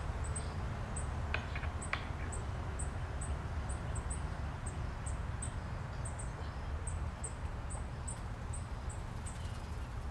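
Short, high-pitched animal chirps repeating unevenly, about two or three a second, over a steady low rumble.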